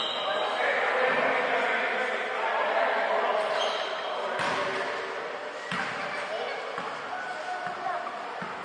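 Indoor basketball game: players' voices carry across the gym hall while a basketball bounces on the court, two sharp bounces standing out about four and a half and six seconds in.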